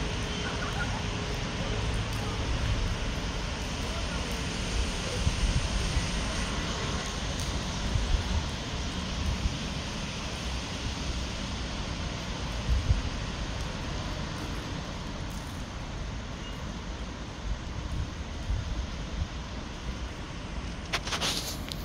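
Wind buffeting the microphone in irregular gusts, over a steady hiss of distant road traffic.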